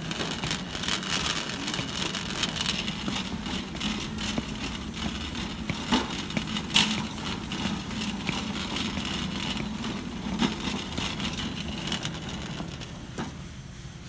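Metal shopping cart rolling over a concrete floor with a steady rattle, with boot footsteps and a few sharp clicks. The rolling dies down near the end.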